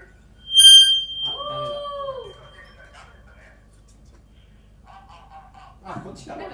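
A sudden, loud high-pitched beep about half a second in, its tone ringing on faintly for a couple of seconds, then a shorter mid-pitched tone that rises and then falls.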